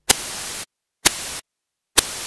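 Bursts of TV-style static hiss from a glitch transition effect. Each burst opens with a sharp crackle and cuts off abruptly to dead silence: two short bursts, then a third starting at the very end.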